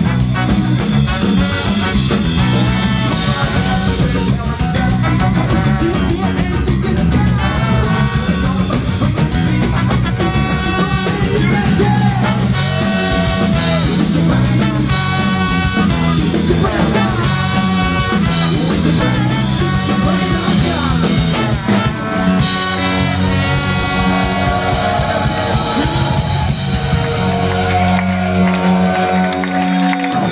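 Ska band playing live: trumpet and trombone over electric guitar, bass and drums, with some singing. The band holds long notes near the end as the song finishes.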